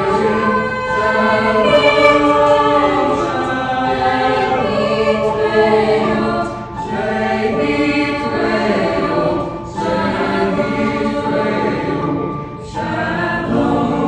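Mixed choir of women's and men's voices singing sustained chords, with brief breaks between phrases about seven, ten and twelve and a half seconds in.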